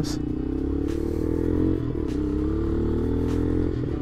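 Vento Screamer 250 motorcycle's liquid-cooled engine running under way on a dirt track, heard from the rider's position. The engine note climbs slowly, dips briefly about two seconds in, then holds steady.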